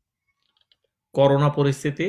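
Near silence with a few faint clicks, then a man starts speaking about a second in.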